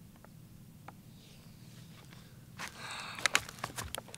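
Quiet for the first couple of seconds, then rustling with a run of sharp clicks and crackles as a plastic water bottle is dipped into a pond, filled with water and handled.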